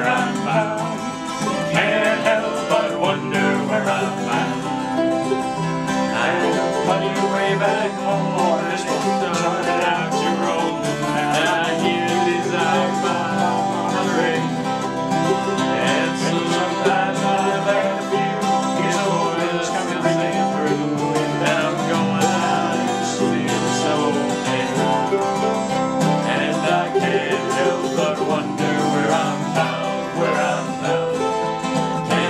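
Acoustic guitar strumming with a mandolin picking the lead in an instrumental break between sung verses of a folk song.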